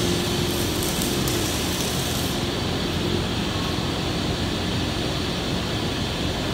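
Steady background noise of a large steel fabrication shop, machinery and ventilation running. A burst of high hiss comes through in the first couple of seconds.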